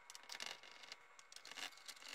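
Faint clicks and light scraping as a screwdriver and hands work on the plastic underside of a Roomba 530, undoing the bottom cover's screws.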